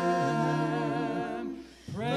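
A small group of voices singing a hymn a cappella, holding long notes; the singing drops away briefly near the end for a breath before the next phrase starts.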